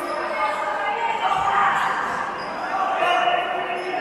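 Indoor futsal match: players' shoes squeaking briefly and often on the hard court amid the ball play, with shouting and crowd voices echoing in a large sports hall.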